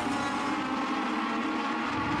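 Legend race cars running at speed down the straight. Their Yamaha 1250 cc motorcycle-derived four-cylinder engines make a steady drone that holds one pitch throughout.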